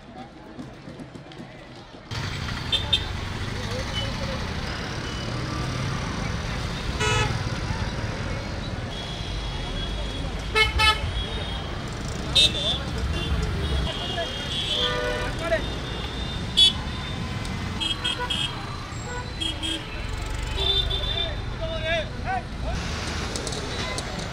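Busy outdoor crowd chatter over the running engines of trucks and vehicles, with short vehicle horn toots breaking in several times. The sound jumps suddenly louder about two seconds in.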